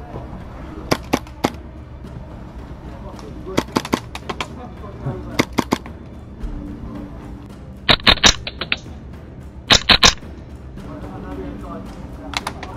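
Airsoft guns firing: a few single shots, then quick clusters, then two louder rapid bursts of clicking shots about eight and ten seconds in.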